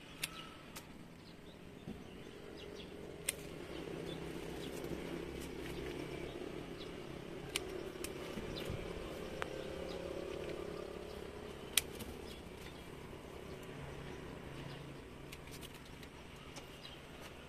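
Bypass pruning shears snipping bougainvillea shoot tips: a few sharp clicks in the first second or so, with more single clicks scattered later. Under them runs a low steady outdoor rumble that swells in the middle.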